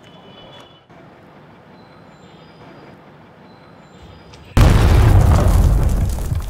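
Faint background noise, then a sudden loud, deep rumbling boom begins about four and a half seconds in and carries on.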